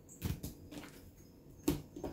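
Oracle cards handled on a table: two brief taps, a soft one just after the start and a louder one near the end, with quiet in between.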